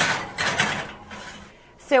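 Kitchen oven being opened and loaded with a baking dish: a sudden clatter, then a scraping, rattling noise that fades out after about a second and a half.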